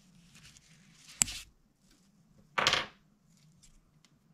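Close handling of a fishing hook, pliers and monofilament line: a sharp click about a second in, then a short scraping rustle about a second and a half later.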